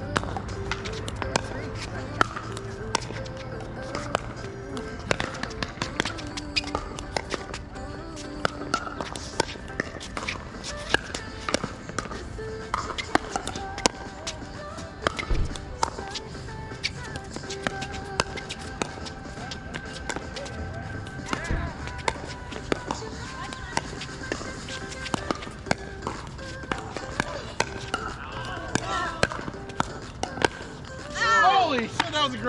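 Pickleball paddles striking a plastic ball again and again through a long rally: a run of sharp pops, one or two a second, with music and faint chatter underneath.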